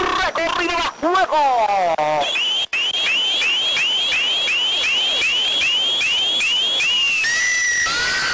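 Radio broadcast sound effect: a rapid series of electronic chirps, about two a second, each sweeping upward in pitch, followed near the end by a held steady tone. It comes just before the match-time announcement, as a time cue.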